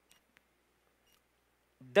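Near silence with a few faint ticks, then a man's voice starts near the end.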